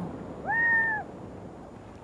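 A single short animal call, about half a second long, holding one pitch after a quick rise and dropping away at the end, over a low hiss.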